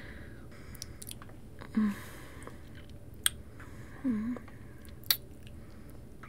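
Close-miked kissing: wet lip smacks and mouth sounds, with a short soft hum about two seconds in and again about four seconds in, and sharp smacks about three and five seconds in.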